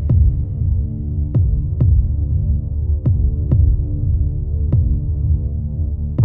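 Trailer score: a low held electronic drone with deep thumps in pairs, like a slow heartbeat, about every second and a half to two seconds.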